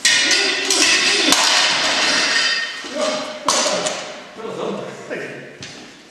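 Steel practice swords clashing in a sword-and-buckler exchange: a sharp strike that rings on for about two seconds, with further strikes about a second in and about three and a half seconds in.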